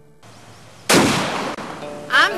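A single loud blast that starts sharply about a second in and fades away over the next second.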